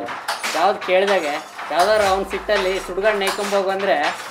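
A man talking, with frequent short sharp clicks and clinks sounding in the background throughout.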